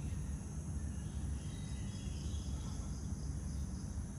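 Steady background: a constant low hum with faint, thin high chirring of insects such as crickets.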